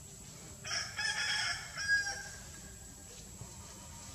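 A rooster crowing once, a call of about a second and a half that starts under a second in and peaks near its end.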